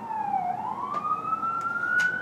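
Emergency-vehicle siren wailing, its pitch dropping to a low about half a second in and then climbing slowly.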